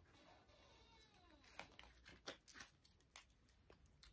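Faint handling of a deck of fortune-telling cards in the hands, with a few soft, scattered card clicks and slides.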